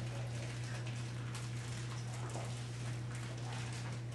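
Light rustling and irregular small clicks of objects being sorted through by hand on a table, over a steady low electrical hum.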